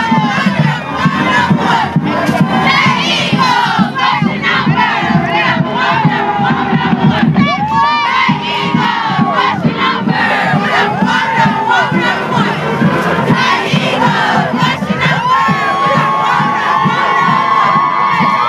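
Crowd cheering and shouting, many voices overlapping, with high screams and whoops rising and falling throughout and a long held shout near the end.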